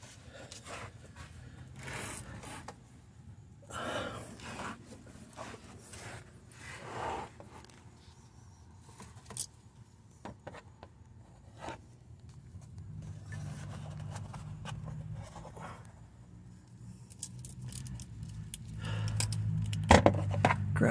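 Scattered scrapes, clicks and rustles of hands working at an oxygen-sensor wire and its rubber grommet under a car, with handling of the phone camera. A low hum comes in during the last several seconds.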